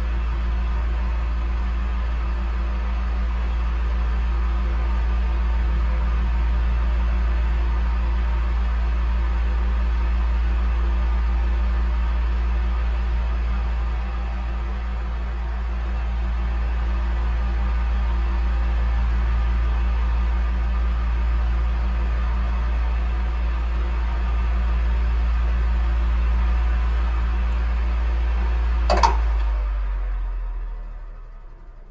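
Electric fan running steadily: a constant low motor hum under an even whir of moving air, with one brief click about a second before the end.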